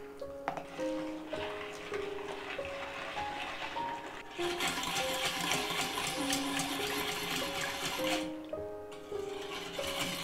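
Spoon stirring salt into water in a stainless steel bowl to dissolve it into brine: a steady watery swishing that grows louder about four seconds in and stops near eight seconds. Light background music with a simple melody plays throughout.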